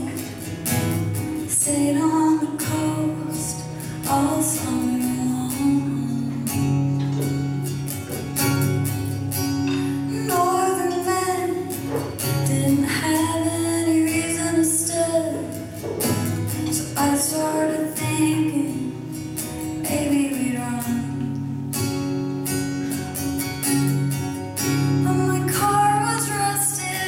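A woman singing a song live, accompanying herself on a strummed acoustic guitar.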